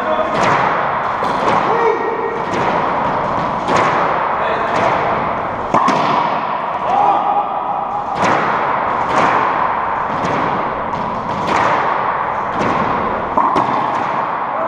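Racquetball rally: the rubber ball cracking off rackets, walls and the wooden floor of an enclosed court, a string of sharp hits about one to two a second, each with a short echo.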